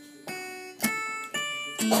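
Electronic keyboard playing four single notes, about half a second apart, each struck and then fading.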